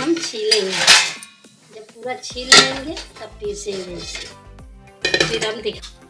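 Metal pressure-cooker pot clattering and scraping against a steel kitchen sink as boiled potatoes are tipped out into a colander, with several loud, ringing clangs. Background music with a steady beat comes in under it about two seconds in.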